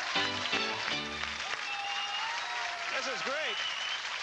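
Lively dance music with a steady beat that stops about a second and a half in, giving way to a studio audience applauding, with voices calling out over the clapping.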